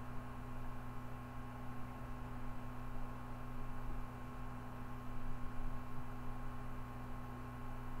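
Steady electrical hum with a faint hiss: the background noise of the recording setup, with no other event.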